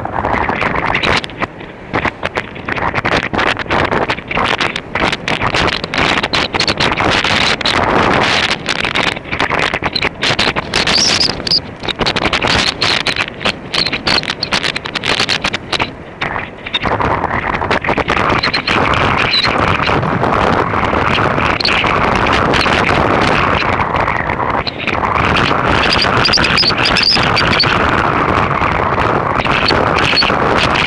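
Wind buffeting the microphone of a bicycle-mounted camera on a downhill ride into a headwind, with many short knocks and rattles through the first half, then a steadier rush of wind from a little past halfway.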